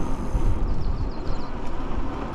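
Wind rumbling on the microphone and tyre noise on wet pavement while riding a Ride1Up Cafe Cruiser e-bike on its 26 x 3 tyres. A quick run of about eight high chirps comes in about half a second in.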